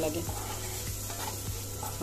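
Chopped green chillies and spice masala sizzling in oil in a frying pan, stirred with a wooden spatula that scrapes lightly against the pan.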